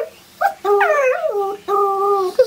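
Small dog whining in drawn-out, howl-like calls: a brief call, then a long wavering one, then one held level.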